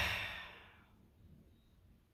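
A man's long, heavy sigh: a breathy exhale that fades out over about the first second.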